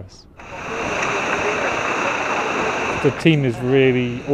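Steady rush of water and wind aboard the racing trimaran Banque Populaire V under sail at speed, starting about half a second in. Voices come in over it near the end.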